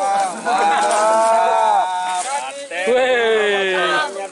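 Men's voices in two long, drawn-out calls: the first held steady for about a second and a half, the second starting near the three-second mark and sliding down in pitch.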